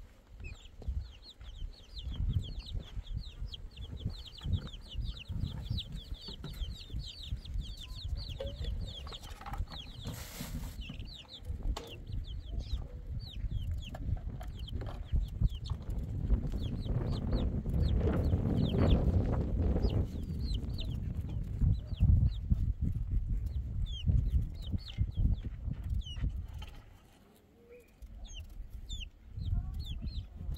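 Chickens with chicks peeping: many short, high chirps in quick succession, thickest in the first several seconds and sparser after. A low, uneven rumble runs underneath, loudest around the middle.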